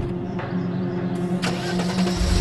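Engine of a 1940s black sedan starting up, with a sharp click at the very start and a hiss and a sharper knock coming in about a second and a half in.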